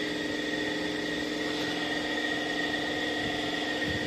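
A machine running steadily: an even hum with a constant high whine on top, unchanging in pitch and level.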